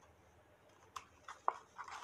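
Cardstock paper box being handled: light taps and clicks from about a second in, one short sharp squeak about halfway through, then paper rustling near the end.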